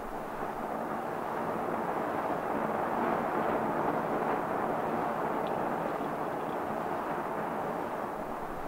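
Phoebus-2A nuclear rocket engine firing at full power on its test stand: the steady rushing noise of its hot hydrogen exhaust, swelling a little midway.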